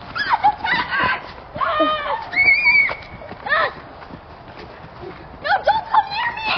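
Children's high-pitched shouts and squeals as they run. There are several short calls in the first three seconds, one of them a held high note, and more start again near the end.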